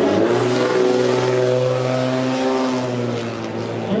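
A truck's engine running as it passes on the street: a steady drone whose pitch shifts a little about halfway through.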